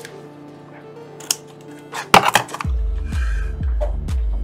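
Background music, which turns to a heavy pulsing bass beat a little past halfway, with a few sharp snips of scissors cutting a plastic sheet about halfway through.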